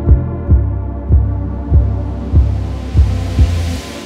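Electronic breakcore instrumental music: a kick drum beats about every 0.6 s over a heavy bass drone and sustained synth chords. Near the end the kick and bass drop out and a rising hiss builds.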